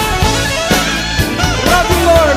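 Upbeat praise-and-worship band music with drum kit and bass under a lead line that bends in pitch.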